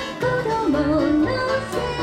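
Bluegrass band playing live: banjo, acoustic guitar and bass under a lead melody line that slides up and down between held notes.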